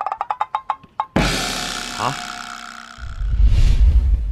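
Edited-in comedy sound effects: a fast run of short ticks climbing in pitch for about the first second, cut off by a sudden loud crash that slowly fades, then a deep booming hit in the last second.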